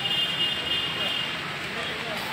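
Outdoor street noise, a steady hum of road traffic. A thin high steady tone is held through the first second and a half, and faint voices sit in the background.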